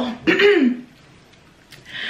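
A woman clearing her throat once, briefly, right at the start.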